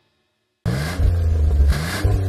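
Silence, then about two-thirds of a second in an engine sound effect starts suddenly: a vehicle engine revving twice, its pitch rising each time, with a rush of noise at each rev.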